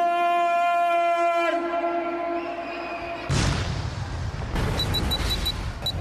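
A ring announcer's long, drawn-out call held on one note for about a second and a half, echoing over the arena PA. Then, about halfway through, crowd noise rises suddenly.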